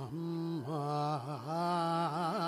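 Male Carnatic vocalist singing a raga alapana in Kharaharapriya on syllables, holding notes that bend and shake with oscillating gamakas, a quicker run of wavering notes in the middle.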